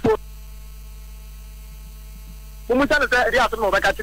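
Steady electrical mains hum in the broadcast audio during a pause in the talk, with a person's voice coming back in about two-thirds of the way through.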